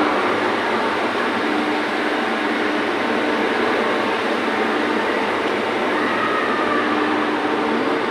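Steady rushing background noise, even in level, with faint steady tones that come and go.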